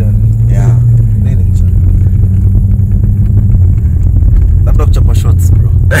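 Steady low rumble of a BMW 318i's engine and tyres heard from inside the cabin while driving.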